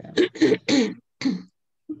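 A woman clearing her throat in four rasping bursts over about a second, then a brief pause.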